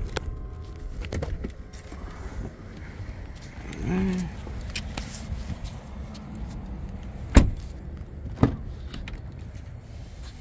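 Doors of a 2021 Ford F-150 crew-cab pickup: the front door shut with one sharp, loud thud about seven seconds in, then the rear door latch clicking open about a second later, over low handling rumble as the camera is carried.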